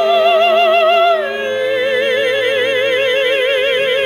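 Two women's operatic voices singing a duet, holding long notes with wide vibrato. About a second in, the upper line steps down to a lower note and holds it, wavering strongly.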